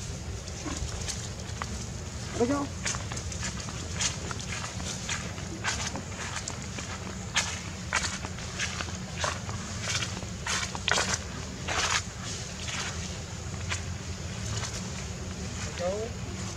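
Irregular crunching of footsteps on dry fallen leaves, thickest in the middle of the stretch, over a steady low rumble of wind on the microphone.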